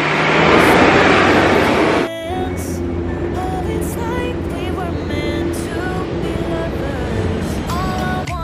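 Road traffic noise, loud for about the first two seconds, cut off abruptly and replaced by background music with a melody for the rest.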